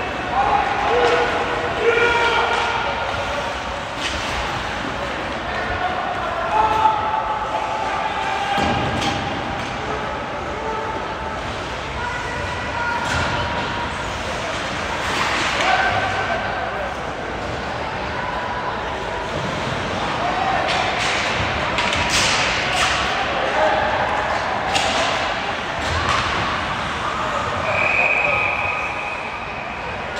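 Ice hockey play: scattered shouts from players and coaches, thuds and clacks of puck and sticks on the ice and boards, and near the end a steady referee's whistle lasting about two seconds that stops play.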